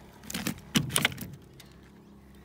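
A freshly caught flathead being handled on a plastic measuring mat laid on timber boards: three quick knocks and rattles within the first second, the middle one loudest, then quiet shuffling.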